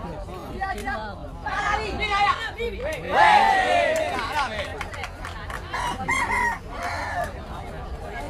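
Spectators' voices around a sepak takraw court, with shouted calls; the loudest is one long rising-and-falling call about three seconds in, as the rally ends.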